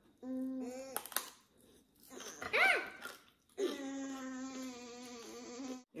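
Wordless humming "mmm" sounds from a person eating: a short steady hum, a brief rising-and-falling "ooh", then a long steady hum of about two seconds. A light click about a second in.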